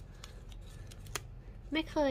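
Folded paper insert leaflet from a gashapon capsule being unfolded by hand: faint handling noise with two light clicks, before a woman's voice comes in near the end.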